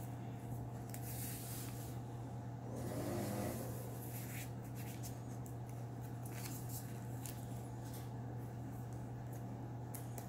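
Paper pages and tucked cards of a handmade journal being handled, in short scattered rustles and scrapes, over a steady low hum. A brief low pitched sound, the loudest moment, comes about three seconds in.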